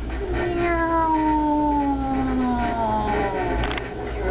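A person's voice giving one long, playful 'ooooh' that slides steadily down in pitch over about three seconds, inside a gondola cabin as it starts downhill. Near the end come a few quick clicks as the cabin runs over the pylon's rollers.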